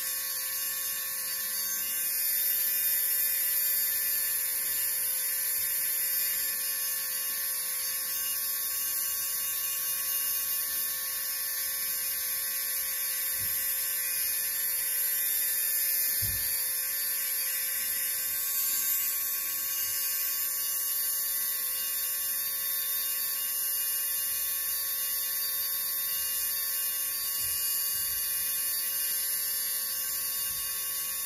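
Electric podiatry nail drill running steadily as its burr grinds down a toenail: a steady whine with a high hiss.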